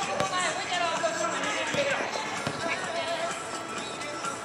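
Futsal players calling out during play over steady background music, with a sharp kick of the ball just after the start.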